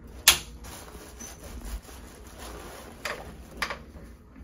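A single sharp crack about a third of a second in, the loudest sound here, typical of a joint popping in the upper neck under a chiropractor's hands, followed by two softer clicks about a second before the end.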